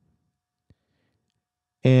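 Near silence with one faint, short click about two-thirds of a second in.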